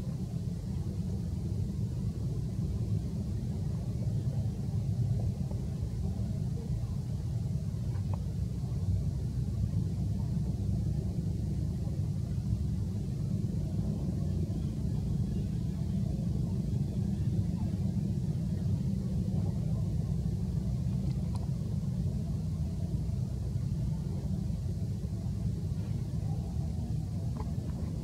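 A steady low rumble with no events standing out.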